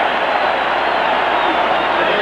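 Large stadium crowd cheering, a steady, dense wash of many voices, heard through an old television broadcast's sound.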